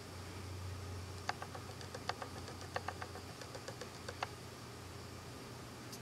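Low steady hum with a scattering of faint small clicks, about a dozen over three seconds, as a syringe plunger is pushed in slowly and gently, feeding fluid through a thin tube.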